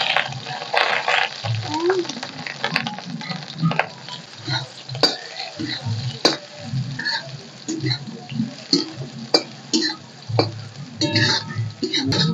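Soya chunks frying in hot oil in a kadhai. A metal ladle stirs them, with many scattered sharp clicks and scrapes against the pan.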